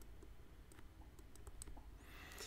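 Faint, scattered small clicks of a stylus tapping on a tablet's writing surface while handwriting, over quiet room tone.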